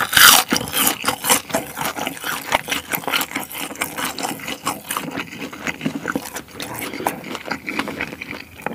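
Close-up eating sounds of fried noodles: a noisy slurp as a mouthful goes in at the start, then chewing with many irregular wet mouth clicks and smacks.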